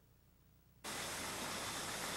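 Bottling-line machinery: a steady, even rushing hiss that starts suddenly about a second in.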